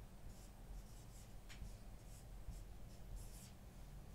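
Marker pen writing on a whiteboard: a run of short, faint scratchy strokes as a word is written out.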